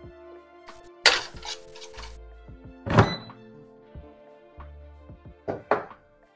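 Air fryer basket handled and pushed back into the air fryer: a rush of scraping about a second in, then a loud thunk about three seconds in as it seats, and two lighter clicks near the end, over soft background music.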